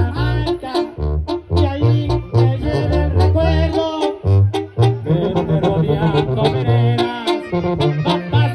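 Mexican banda music played live: an instrumental passage of trumpets, trombones and clarinets over a tuba bass line and drums, with no singing.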